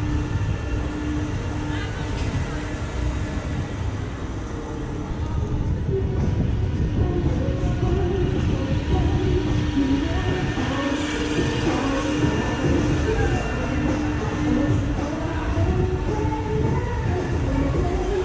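Giant Ferris wheel turning: a steady low rumble with a steady hum that breaks off now and then, with fairground music playing.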